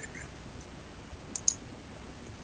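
Two short, sharp clicks in quick succession about one and a half seconds in, over faint steady room noise.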